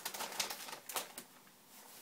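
Wrapping paper crackling and rustling as a cat noses and paws into a wrapped present: a quick run of sharp crinkles that thins out after about a second.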